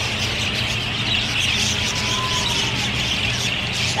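A flock of budgerigars chattering, a dense continuous twitter of many small birds at once, over a low steady hum.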